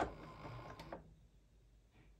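Computerised sewing machine with a walking foot stitching through layered cotton fabric, stopping about a second in.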